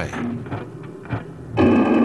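Documentary background music: a quiet, sparse passage, then a loud sustained chord that comes in suddenly about a second and a half in.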